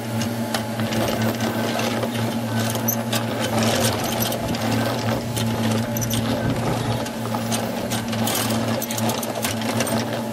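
Case compact track loader's diesel engine running with a steady low drone and a rapid mechanical clatter as the machine digs a footing trench with its bucket.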